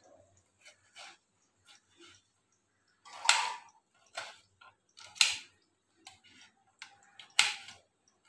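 Knife chopping a tomato on a plate: a series of separate cuts, each a short click of the blade through the flesh and onto the plate, the loudest about three, five and seven seconds in.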